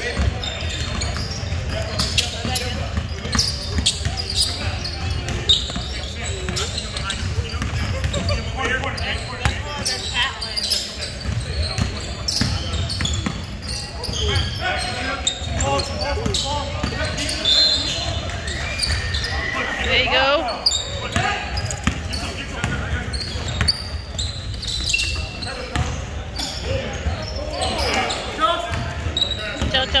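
Basketball bouncing on a hardwood gym floor during play, many sharp knocks echoing in the large hall, under voices of players and onlookers calling out; someone shouts "out" at the very end.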